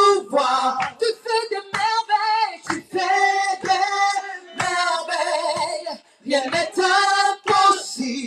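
A woman singing a worship song into a microphone, in held, sliding notes and short phrases broken by brief pauses.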